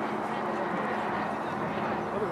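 Indistinct background voices over a steady outdoor noise.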